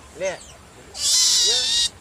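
Otter pup giving a loud, shrill, high-pitched call about a second in, held steady for nearly a second.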